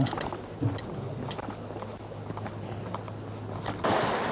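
A faint, steady low hum with a few light clicks. Just before the end, wind noise on the microphone and the sea come in.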